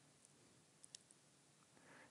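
Near silence: faint room tone, with two faint clicks close together a little under a second in.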